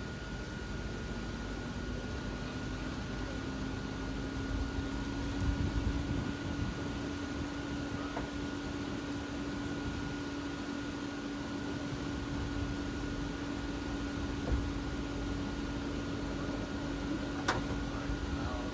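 Electric blower fan of an airblown Christmas inflatable spinning up about a second in, its hum rising slightly in pitch and then holding steady. Under it runs a steady whir from the other inflatables' blowers, and there is a sharp click near the end.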